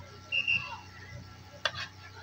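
Netball court sounds during play: a brief high, steady tone near the start, then a single sharp knock a little past halfway, over faint background voices.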